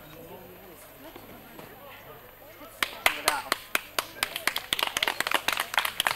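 A few people clapping in quick, uneven claps, starting about halfway through.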